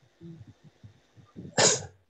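A person sneezes once, a short loud burst about one and a half seconds in, with a few faint low sounds before it.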